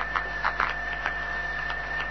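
A steady, high-pitched hum holds one tone over the hiss of an old field tape recording, with a few faint clicks. It is the "very strange humming sound" heard while the men fall silent.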